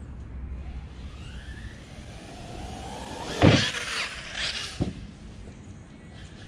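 Brushless electric RC car's motor whine rising in pitch as it speeds up, then a loud thud about three and a half seconds in and another sharp hit about a second later as the car lands and bounces.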